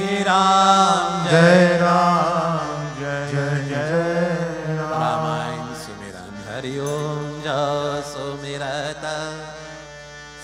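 A man singing a Hindu devotional chant in long, ornamented phrases with wavering pitch, over a steady low drone.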